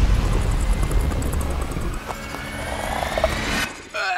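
Trailer sound design: a deep rumble, then a rising whine of several tones climbing together through the second half, cut off suddenly just before the end.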